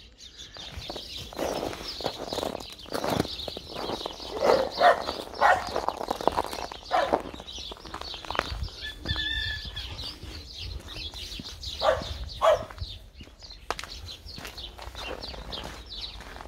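Footsteps on packed snow and icy concrete at a walking pace, about two steps a second. Birds call in the background, with a short call about nine seconds in.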